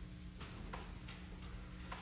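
Faint footsteps on a hard floor: about four sharp taps at uneven spacing, over a low steady hum.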